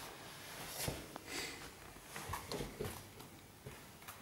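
Faint handling noises: a few soft knocks and rustles over quiet room tone.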